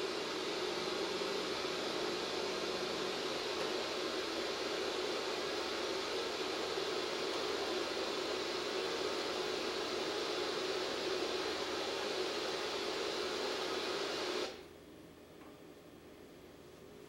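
Steady static hiss from the speaker of a 1986 General Electric clock-radio-television, its analog TV tuner receiving no station. The hiss cuts off abruptly near the end.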